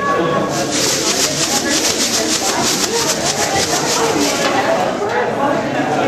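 Performers' costumes of plastic bags, cans and bottles shaken in a fast, even rhythm, about six rustling, rattling strokes a second. It starts about half a second in and stops near four and a half seconds, over the murmur of a watching crowd.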